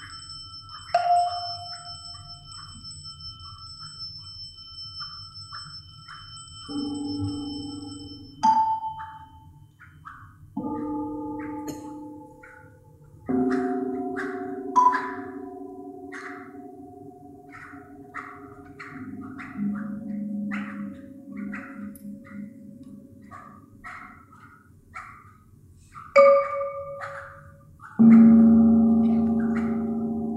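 Tuned metal percussion struck with mallets: single notes ring out and overlap, with light quick high ticks scattered between them. A loud low strike near the end rings on as a chord.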